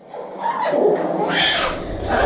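A harsh, noisy animal call lasting about a second and a half, with a low rumble joining about a second in.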